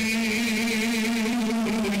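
A man's voice holding one long, steady chanted note, its pitch dipping slightly just before it ends.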